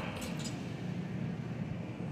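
Shopping cart rolling along a store floor with a steady low rumble, and a light clink about a quarter second in.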